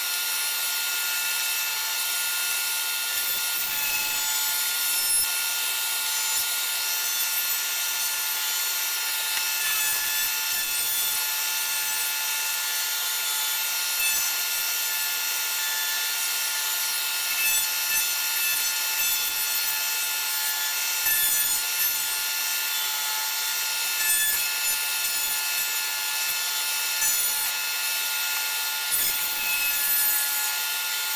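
Table-mounted router running steadily with a high whine, its bearing-guided flush-trim bit cutting excess veneer off hardwood pieces in repeated short passes every few seconds. The pieces are fed as a climb cut, against the bit's rotation.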